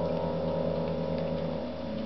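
A cluster of upright piano notes, pressed by a Japanese macaque sitting on the keys, ringing on and slowly fading; some of the lower notes die away about three-quarters of the way through.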